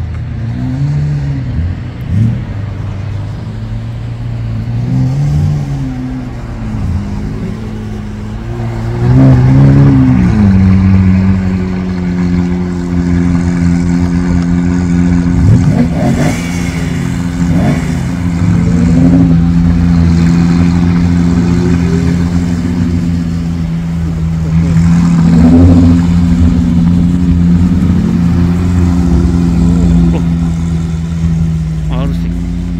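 Sports car engines running at low speed, a steady low engine note with short revs that rise and fall several times; the strongest revs come about nine seconds in and again about twenty-five seconds in.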